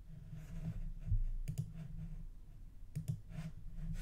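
A computer mouse clicking a few times, in quick pairs about one and a half and three seconds in, over a steady low hum.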